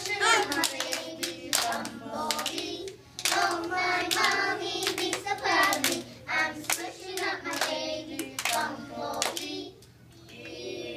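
A group of young children singing a song together, clapping their hands along with it.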